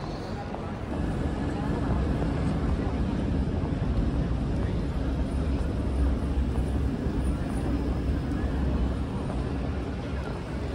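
Busy city street ambience: a steady low rumble, louder from about a second in, with passers-by talking.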